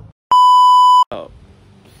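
A loud, steady 1 kHz bleep tone, about three-quarters of a second long, edited into the soundtrack. It begins and ends abruptly, with the audio cut to silence just before it.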